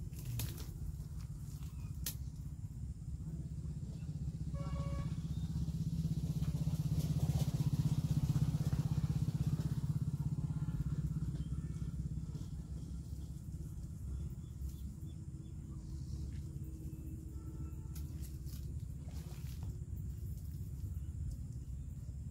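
A motor engine drones steadily, swelling louder over several seconds in the middle and then fading back, as a vehicle passing by does.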